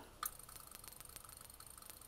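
Faint, rapid, even ticking with a thin steady high tone from the running high-voltage test rig, and a single sharp click about a quarter second in.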